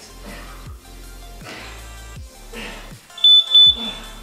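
Interval timer beeping twice in a high tone about three seconds in, marking the end of the work period and the start of rest, over background music with a steady beat.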